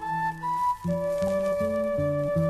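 Quena (Andean notched flute) with guitar playing a baroque piece. The quena's melody moves, then holds one long note from about a second in, over a guitar picking a low, steadily moving bass line of a few notes a second.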